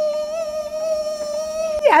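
A woman's voice singing one long, high held note that wavers slightly, breaking off near the end as she starts talking again.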